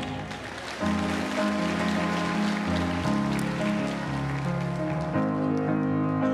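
Congregation applauding over sustained piano and organ chords; the applause dies away about five seconds in while the chords play on.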